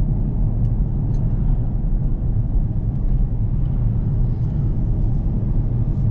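Inside the cabin of a Jaguar XF 3.0 V6 diesel on the move: a steady low rumble of engine and road noise at an even cruising speed.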